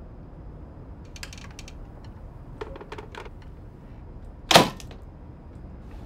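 A few faint clicks and knocks, then a front door slammed shut with one loud bang about four and a half seconds in.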